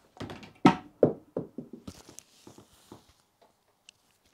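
Snooker balls clacking on a small home table: a sharp clack about half a second in, then a run of fading clicks and knocks as the black drops into a corner pocket and jumps back out.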